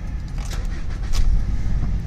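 Low, steady vehicle rumble heard inside a car's cabin, with a brief louder swell about a second in.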